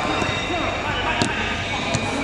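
A football being struck: two sharp knocks, one just over a second in and one near the end, with players shouting.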